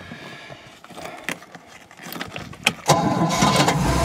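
A few light clicks, then about three seconds in the OMC 230 Stringer 800's small-block Chevy 350 V8 fires and runs steadily. It starts readily after its ignition timing and idle have been set.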